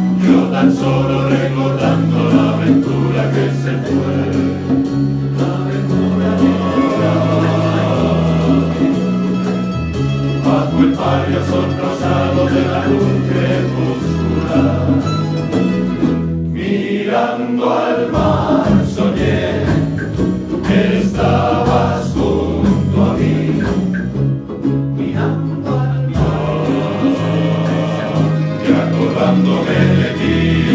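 Men's choir singing in unison and harmony, accompanied by a plucked-string ensemble of Spanish guitars, bandurrias and laúdes, over a stepping keyboard bass line. The bass drops out for a moment about two-thirds of the way through, then the full band comes back in.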